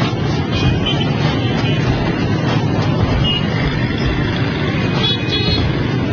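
Dense motorbike and scooter traffic running in a steady mass of small engines, with a few short high beeps, the loudest cluster about five seconds in.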